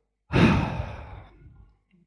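A man's sigh: one long exhale into a close headset microphone, starting about a quarter second in, loud at first and trailing off over about a second.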